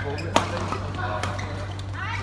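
Shuttlecock struck by badminton rackets during a doubles rally: one sharp crack about a third of a second in, with lighter hits near the start and after a second, ringing in a large hall.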